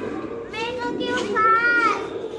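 Young children's voices: high-pitched calls and chatter from a group of toddlers, loudest in the second half.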